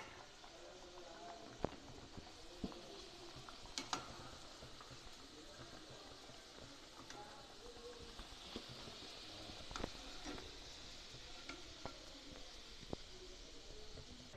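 Bati dough cakes frying in hot refined oil, a faint steady sizzle, with a few sharp clicks of a perforated steel skimmer against the pan as they are lifted out.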